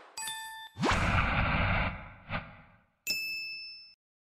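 Sound effects for an animated logo reveal: a bell-like ding, then a rising whoosh with a low rumble, a short hit, and a final bright chime that cuts off abruptly near the end.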